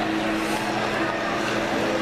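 Model passenger train rolling past on layout track, a steady running hum, over the background chatter of a crowded exhibition hall.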